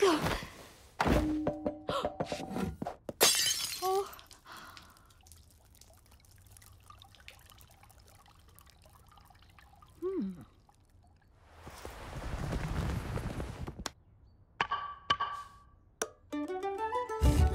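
Cartoon sound effects: a thump about a second in, then a clatter like a string of beads scattering across a tiled floor. Quiet rustling follows, then a swell of noise that rises and fades near the end.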